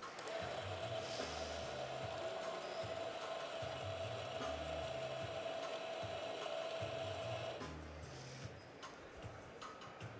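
Coffee grinder running with a steady whine as it grinds beans into an espresso portafilter, then stopping suddenly about three quarters of the way through. Background music with a low bass beat plays underneath.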